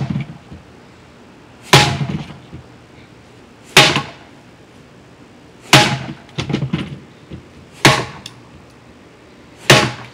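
A wooden stick smashed down onto the top of a wooden cabinet: five hard cracking blows, about one every two seconds, with a short rattle of smaller knocks after the third.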